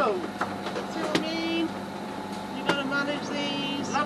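Sailing yacht's inboard diesel engine running steadily under way while motor sailing through a swell. Two sharp knocks, about a second in and again near three seconds, come with a few short squeaky sounds.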